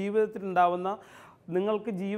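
Speech only: a man talking, pausing briefly about halfway through.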